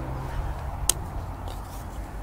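Wind rumbling on the microphone in an open field, with a faint low hum that fades about a second in. A single sharp click comes just before the one-second mark.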